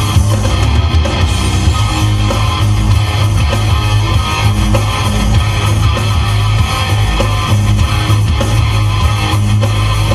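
Hard rock song playing loud and steady, with distorted electric guitar and a drum kit.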